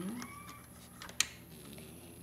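A single sharp plastic click a little over a second in, from handling HEXBUG Nano toys and snapping habitat track pieces, over faint room tone.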